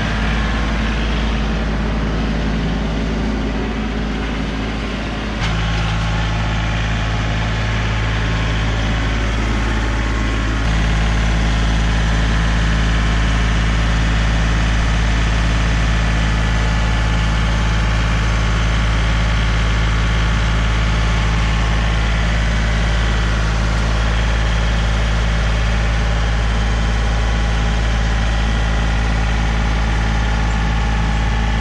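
John Deere compact tractor's diesel engine running steadily close by while its loader and pallet forks carry a load. The engine note steps up and gets louder about five seconds in and again about eleven seconds in, as the throttle is raised.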